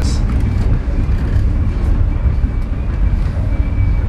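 Indian Pacific passenger train running, heard inside a sleeper car's corridor as a loud, steady low rumble. A faint, thin high tone comes in about halfway through.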